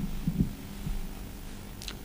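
Steady low electrical hum from the microphone and sound system, with a few faint low thumps in the first second.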